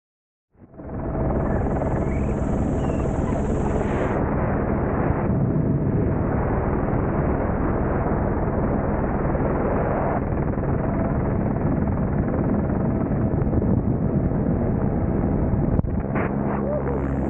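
Helicopter turbine and rotor noise, loud and steady, heard from the open door and skid of the hovering helicopter with air rushing past the microphone. It starts abruptly about half a second in.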